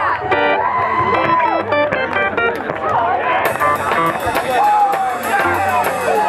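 Live rock band starting a song: an electric guitar plays a few short notes under shouting voices, then about three and a half seconds in the drums and full band come in with a steady cymbal beat.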